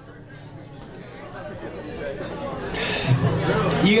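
Audience chatter after a song ends, with a man's voice speaking into the microphone near the end.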